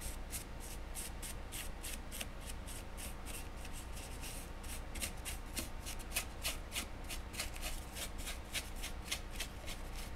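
Small paintbrush stroking and dabbing paint onto a sculpted tree model close to the microphone: a quick run of short brushing strokes, several a second, busier in the second half.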